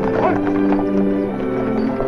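Dramatic background music with held, stepping notes over the hoofbeats of a galloping team of horses pulling a stagecoach.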